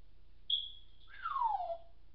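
African grey parrot whistling: a short high steady note about half a second in, then a longer whistle falling smoothly in pitch.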